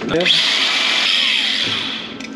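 Handheld angle grinder spinning up with a rising whine, then grinding the edge of a metal plate to clean it for welding. The sound is loud and steady, and eases off near the end.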